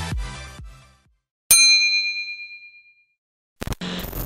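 An electronic dance-music beat fades out, then a single bright bell-like ding sounds about a second and a half in and rings away for about a second and a half: an edited-in transition chime. A short burst of noise follows near the end.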